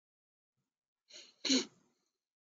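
A person sneezing once: a softer intake of breath about a second in, then the louder sneeze just after.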